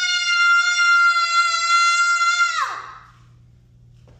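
A young girl's loud, high-pitched scream, held on one steady note, trailing off with a falling pitch a little under three seconds in.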